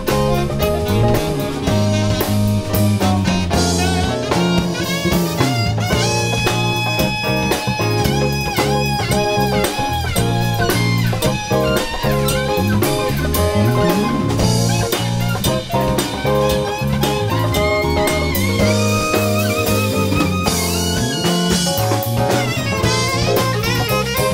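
Live jazz band playing: saxophone lead lines with bent and held notes over drum kit, bass, electric guitar and keyboard.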